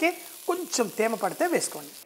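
A voice talking, over a steady background hiss.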